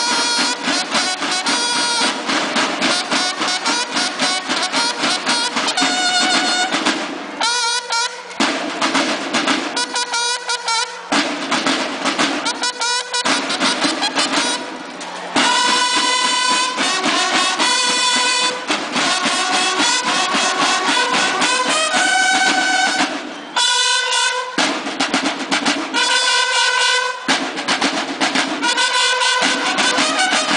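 A banda de guerra drum and bugle corps playing: bugles sounding phrases over snare drums beating together, with brief pauses between the bugle phrases.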